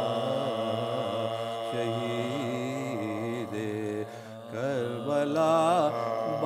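A male voice chanting a noha, the Shia lament for Imam Husain, in long held notes with wavering pitch. The voice drops away briefly about four seconds in, then comes back louder.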